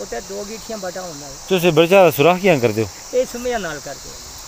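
Men talking, loudest a little over a second in, over a steady high chirring of crickets.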